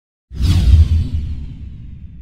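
A whoosh-and-boom sound effect for an intro title transition. It starts suddenly about a third of a second in with a deep rumble, while a hiss falls in pitch, and both fade steadily.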